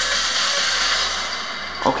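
Movie trailer sound effects playing: a steady rushing noise, like a sustained whoosh, with a faint low hum beneath it.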